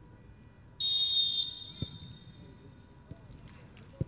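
Referee's whistle: one shrill blast about a second in that trails away, signalling the kickoff restart.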